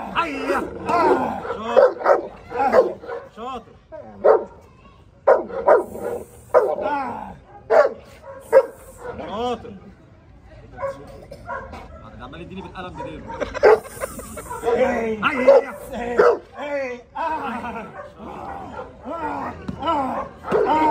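A dog barking in repeated short bursts during protection training, with human shouting mixed in and a couple of brief lulls.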